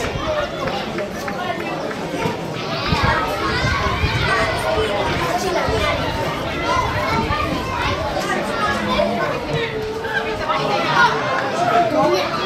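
Overlapping chatter of sideline spectators, mixed with children's voices calling out.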